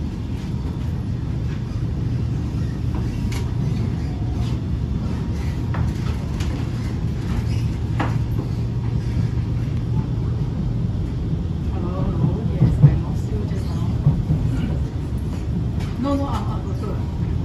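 Cabin noise of an SMRT R151 metro train running on the line: a steady low rumble of wheels and running gear, with scattered knocks and one sharp louder bump about three-quarters of the way through.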